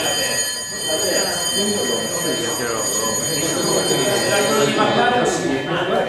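Indistinct, overlapping chatter of many voices in a large hall, with a steady high electronic whine that stops near the end.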